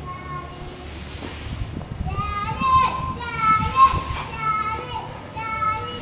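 A young child shouting a rapid, high-pitched repeated chant, starting about two seconds in, over a low rumble.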